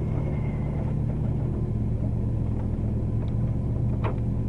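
Triumph TR7 V8's V8 engine idling steadily with a low rumble, heard from inside the cabin while the car creeps forward.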